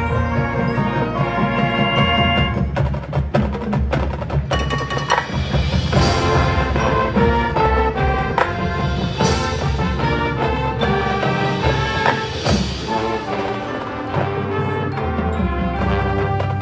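High school marching band playing its field show: sustained band chords over percussion, with a run of sharp percussion hits about three to four seconds in.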